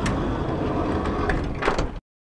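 A van's sliding side door rolling along its track with a low rumble, with a few knocks and a thump near the end. The sound cuts off abruptly.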